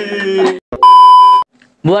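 A single electronic beep: one steady, high, pure tone lasting about half a second, the loudest sound here, starting and stopping abruptly.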